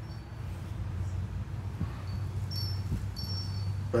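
Outdoor background with a steady low hum, and a few faint, short high ringing tones starting about two and a half seconds in.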